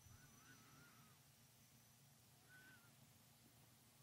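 Near silence: room tone with a faint steady hum, and two faint wavering high calls. The first lasts about a second at the start; a shorter one comes past the middle.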